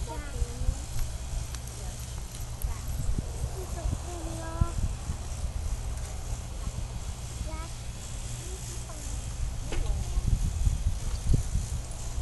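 Wind buffeting the phone's microphone as a low, gusting rumble, with faint voices now and then.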